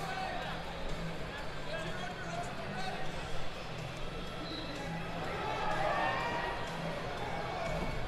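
Wrestling arena ambience: distant voices and faint background music over a steady low hum, with a few soft thumps from the mat.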